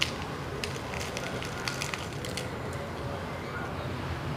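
Crisp batter of deep-fried chicken crackling as the piece is held and torn by hand: a scatter of short, sharp crackles.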